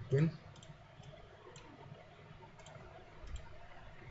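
Computer mouse clicking: a handful of faint, irregularly spaced clicks over low background hum.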